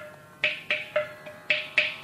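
Mridangam played without the violin: after a brief pause, five sharp strokes, each ringing at the drum's tuned pitch, in an uneven rhythm of Carnatic percussion.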